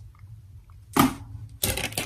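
A single sharp knock about a second in, in an otherwise quiet small room, followed by a brief voice sound near the end.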